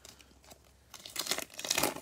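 Cellophane wrapper of a Panini NBA Hoops trading-card cello pack being torn open and crinkled by hand. It is soft and sparse at first, then there is a run of loud crinkling in the second half.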